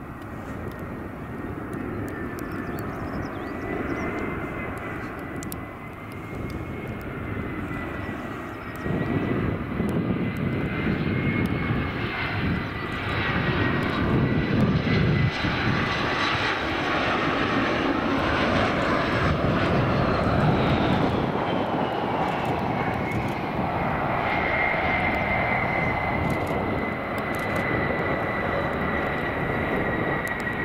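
Embraer E175's twin turbofan engines (GE CF34) on landing approach: a steady whine with engine rumble that grows louder about a third of the way in as the jet passes close, with a higher whine falling in pitch as it goes by, then running on as it comes down onto the runway.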